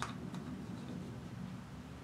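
A single light tap, a plastic paint cup being set down on the work table, followed by a faint tick or two and then quiet room tone with a low hum.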